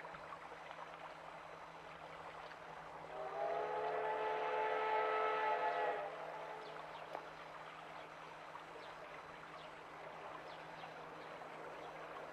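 JNR Class C62 steam locomotive blowing its steam whistle once, a steady multi-tone blast of about three seconds starting some three seconds in. Throughout, a steady noisy haze of the train running, as heard on an old vinyl field recording.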